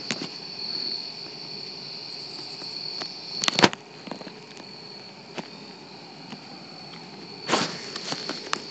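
A steady, high-pitched chorus of crickets, with a couple of sharp knocks about three and a half seconds in and a short rustle near the end.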